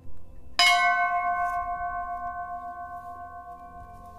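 Large hanging temple bell struck once by hand about half a second in, after a light knock, then ringing on with a slowly fading, wavering tone.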